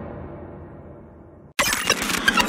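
Glitch sound effects from a logo-reveal soundtrack. The tail of a hit fades away and cuts off to silence about one and a half seconds in, then an abrupt burst of glitchy digital clicks and static starts.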